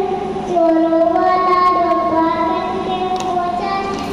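A young boy singing into a handheld microphone, holding long, steady notes. The pitch steps down to a lower note about half a second in.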